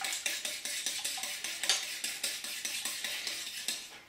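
A utensil beating egg mixture in a stainless steel bowl: quick, even clinking strokes against the metal, about four or five a second.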